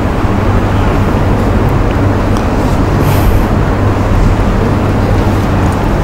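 Steady low rumble with a hiss above it, a constant loud background noise.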